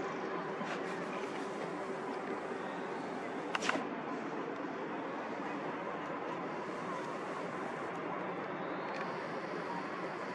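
Steady outdoor background noise, an even hiss-like rumble with no distinct source, with one sharp click about three and a half seconds in.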